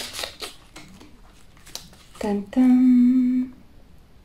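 Soft clicks and rustles of small packaging being handled by hand, then a woman's voice held on one steady note for just over a second, a hum or drawn-out vocal sound, which is the loudest thing heard.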